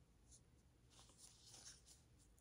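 Faint, soft rustling of a tarot card deck being handled and shuffled in the hands, a few brief rustles, the loudest near the middle, over near silence.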